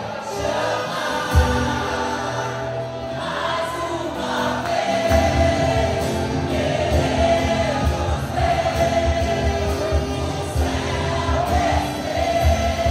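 A live worship band plays, with group singing in Portuguese over keyboard, acoustic guitar, bass and saxophone. The bass drops out at the start and comes back in fully about five seconds in.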